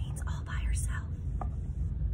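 A woman's quiet, breathy whispering over a steady low hum, with a single click about one and a half seconds in.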